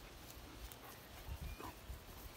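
A small white terrier gives a faint, brief whine about a second and a half in, over a low rumble on the microphone.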